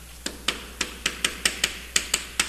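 Chalk tapping against a chalkboard as characters are written: a quick, irregular run of sharp clicks, about four a second.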